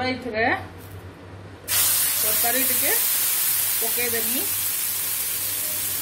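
Hot butter on a flat tawa bursting into a loud, steady sizzle about two seconds in, as bhaji is dropped onto the pan to fry.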